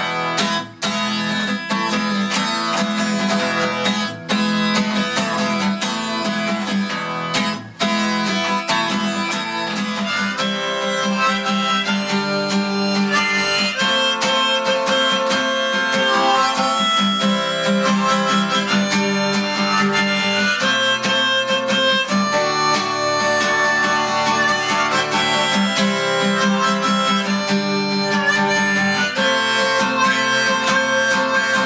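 Acoustic guitar strummed in a steady rhythm, cut short three times in the first eight seconds. From about ten seconds in, a Hohner Blues Band diatonic harmonica in C plays a melodic solo over the strumming.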